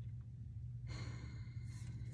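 A person's soft sigh, an exhaled breath about a second in, over a steady low hum.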